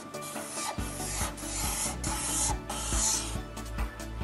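Black felt-tip marker rubbing across paper in a run of drawing strokes, with quiet background music underneath.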